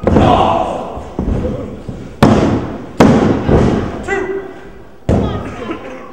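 Four loud thuds of wrestlers hitting the wrestling ring mat, each dying away in the hall's echo.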